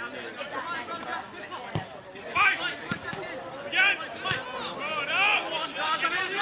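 Several men shouting and calling to one another across a football pitch, voices overlapping in short bursts, with a few sharp knocks in between.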